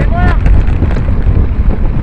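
Heavy wind rumble on the microphone of a camera moving at speed along the road. About a quarter second in comes a short, high whoop from a bystander.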